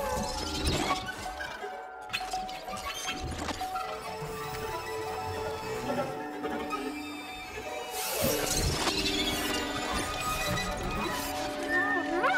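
Contemporary music for a chamber ensemble of 23 players with electronics: held tones under sudden noisy, smashing bursts, the biggest about eight seconds in.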